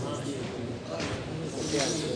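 A pause in a man's Quran recitation over a PA system: steady hiss and faint voices in a reverberant hall, with a sharp breath in near the end.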